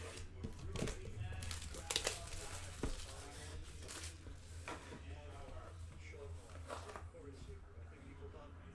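Plastic wrapping being slit and torn off a trading-card box, crinkling, with several short sharp rips in the first few seconds, then softer handling of the box.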